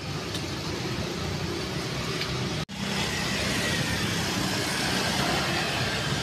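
Steady outdoor street noise with road traffic, an even hum and hiss with no distinct events. It drops out abruptly for an instant about two and a half seconds in, where two clips are spliced.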